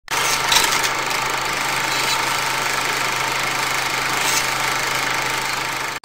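A steady, loud machine-like noise with a low hum and a few brief clicks in it.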